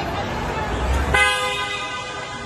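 A vehicle horn sounds once, starting suddenly about a second in and dying away over the next second, over the noise of a shouting crowd.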